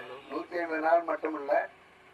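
A man speaking into a handheld microphone, his voice stopping for a short pause near the end.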